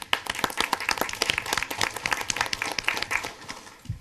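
Applause from people in the meeting room: many overlapping hand claps that thin out near the end.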